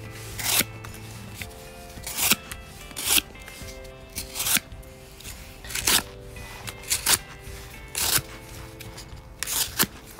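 Fixed-blade 1095 high-carbon steel knife blades slicing through corrugated cardboard: about eight quick cutting strokes, roughly one a second, each a short rasping rip. Background music plays underneath.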